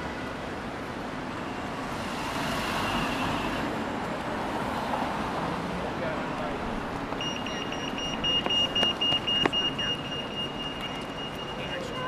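City street traffic, with a pedestrian crossing's high-pitched electronic beeper starting about seven seconds in: rapid beeps that then run on almost without a break.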